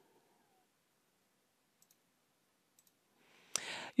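Near silence broken by faint computer mouse clicks, one a little under two seconds in and another about a second later, then a louder click shortly before the end.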